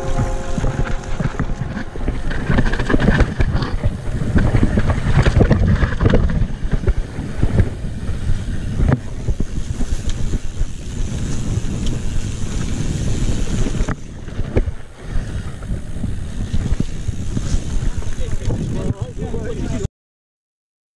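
A mountain bike ridden fast down a dirt singletrack, heard through the rider's action camera: wind buffeting the microphone, tyres on dirt, and the bike's chain and frame rattling and knocking over bumps. It eases briefly about two thirds of the way in and cuts off suddenly at the end.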